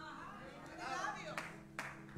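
Faint congregation sounds in a pause of the preaching: a couple of scattered hand claps in the second half and soft, distant voices, over a low held keyboard note.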